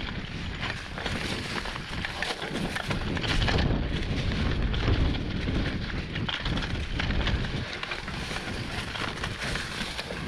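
Mountain bike rolling fast down a leaf-covered dirt trail: a steady rough rumble of the tyres on dirt and leaves, with many small rattles from the bike over the bumps and wind buffeting the microphone.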